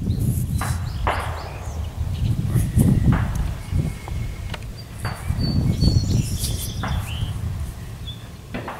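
Low, uneven rumble of wind and handling on the camera microphone, with scattered clicks and rustles from fingers turning a small stone point. A brief high chirp sounds about five seconds in.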